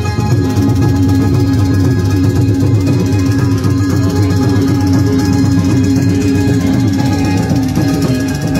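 Live Saraiki folk-style instrumental music played on an electronic keyboard with a plucked-string sound, and a Roland Octapad electronic percussion pad keeping a steady rhythm.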